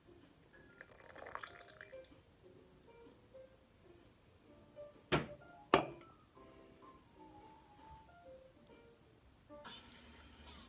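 Coffee trickling from a stovetop moka pot into a ceramic cup, then two sharp knocks about half a second apart as the pot is set down on the stone counter, over soft background music.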